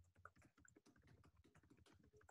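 Faint typing on a computer keyboard: quick, irregular keystrokes, several a second.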